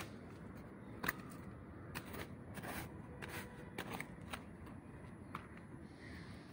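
A small plastic toy shovel scraping and digging into loose soil: faint, irregular scrapes and scoops, one every half second or so.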